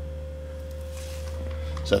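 A steady low hum with a thin, constant high tone over it, both unchanging throughout, as background room tone; a man's voice starts just before the end.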